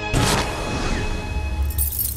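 Dramatic title-sequence sound effects: a sudden crashing hit just after the start, a low rumble underneath, and near the end a burst of metallic clinking, as of rattling chains.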